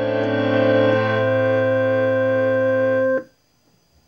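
Music: a sustained organ-like electronic keyboard chord, held steady with one inner note shifting about a second in. It cuts off abruptly a little after three seconds, leaving near silence.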